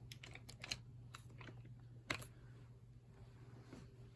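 Handling noise: scattered light clicks and taps, with one sharper click about two seconds in, over a faint steady hum.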